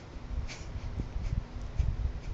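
Phone handling noise: irregular low rumbles and soft knocks as the phone moves about and brushes against the child's hair, with a faint steady hum.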